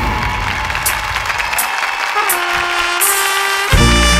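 Intro of a Thai luk thung song's band accompaniment: a busy opening with a couple of cymbal-like hits, a single held note, then the full band coming in loudly with a strong bass near the end.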